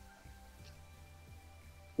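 Faint steady hum and room tone of a video-call line, with no clear event.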